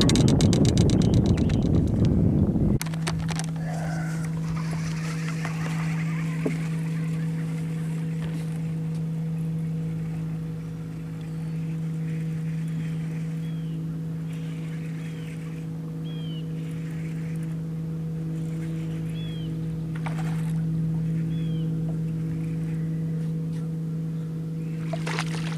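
Bow-mounted electric trolling motor running with a steady, even hum, after a loud rushing noise that cuts off sharply about three seconds in. Faint short rising bird chirps come every second or two in the middle stretch.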